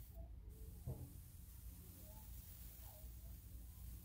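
Airbrush spraying paint, heard as a faint steady hiss, with a soft knock about a second in.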